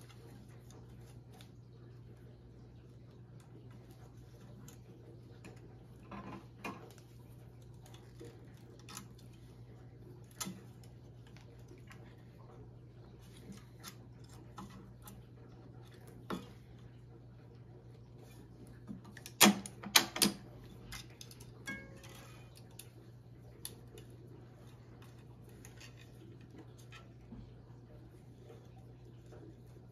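Scattered light clicks and taps from tennis racquet stringing on an electronic stringing machine: string, clamps and pliers being handled. A sharper cluster of clicks comes a little past two-thirds through, over a steady low hum.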